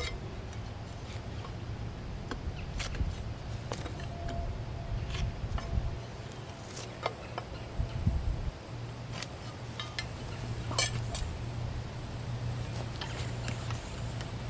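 Scattered light clicks and taps of a speed square and pencil handled against a wooden fence post while a cut line is marked, over a steady low hum.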